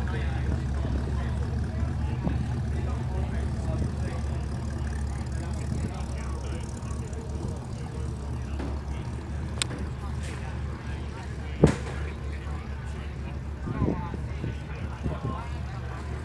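V8 engine of a red C3 Corvette running as the car pulls away, its low rumble easing off into a steady low drone. A single sharp knock comes about two-thirds of the way through.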